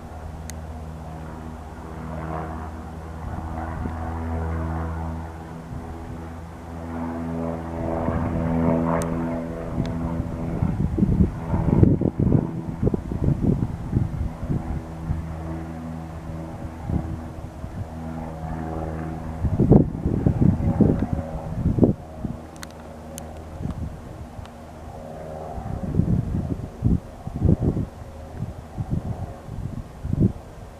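Cessna 172N Skyhawk's four-cylinder Lycoming engine and propeller droning steadily as the single-engine plane climbs away overhead. From about a third of the way in, irregular gusts of wind rumble on the microphone over the engine sound.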